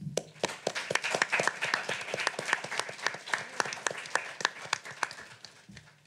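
Audience applauding, the clapping thinning out and dying away about five seconds in.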